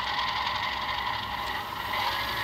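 Electric motor and gearing of a Bachmann diesel B-unit model locomotive running under power with a steady whine, while the model barely creeps along the track. The drive is not working properly; the owner suspects a loose drive rod or worm gears popped out of place.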